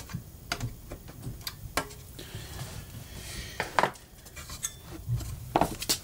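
Irregular light clicks and metallic taps as stiff solid-core heater wires are pressed and tucked down against a tube amp's metal chassis, about a dozen small knocks spread unevenly.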